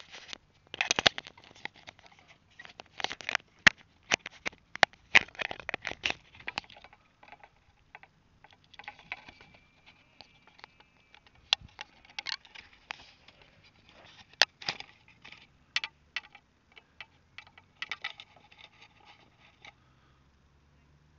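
Handling noise picked up by a small rocket-mounted camera's microphone: irregular clusters of scrapes, rubs and sharp knocks as the rocket is set on its launch pad and handled.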